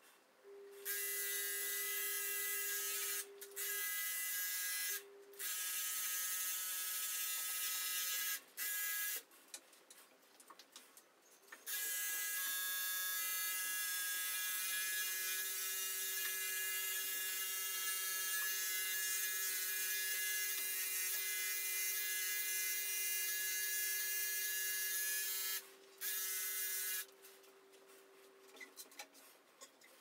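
Electric pet hair clippers running with a steady high-pitched buzz as they shear a terrier's coat, stopping briefly several times and then running without a break for most of the second half.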